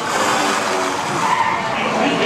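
Cartoon splash sound effect: a loud, noisy rush of water that fades over about a second and a half, laid over the ride's soundtrack music.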